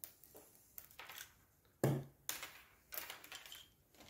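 A few light clicks and knocks, with short rustles, of cables and small plastic devices being handled on a table; the loudest knock comes a little under two seconds in.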